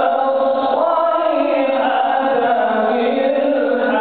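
A man's voice reciting the Quran in the melodic chanted style, drawing out long held notes that slowly rise and fall without a break.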